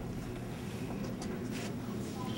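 Steady low background rumble, with a few faint ticks about a second in and again shortly after.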